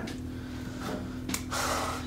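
A man drawing a breath near the end, just after a single sharp click, over a faint steady hum.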